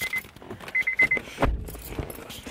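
A car's dashboard warning chime beeping in quick runs of four or five high beeps, one run about a second after another. There is a low thump about one and a half seconds in.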